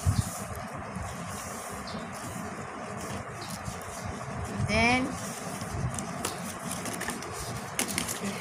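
Steady background noise with a few faint crackles as palas leaves are handled and folded, and a short voice sound that rises and falls about five seconds in.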